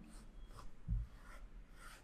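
Tailor's chalk scraping faintly across fabric in a few short strokes as pattern lines are marked on the cloth, with one soft low thump about a second in.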